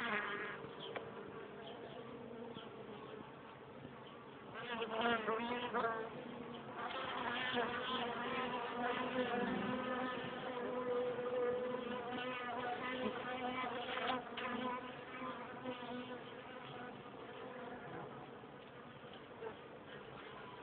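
Honeybees buzzing around an open hive, with bees flying close past the microphone so that the hum wavers in pitch and swells; it is loudest in the middle of the stretch.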